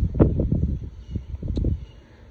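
Irregular low rumbling and short thumps on a handheld phone's microphone, the kind made by wind gusts or by handling while walking with the phone.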